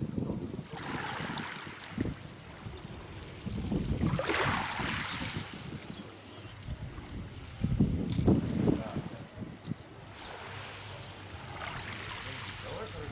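Wind buffeting the microphone in uneven gusts, with a few hissing swells of air.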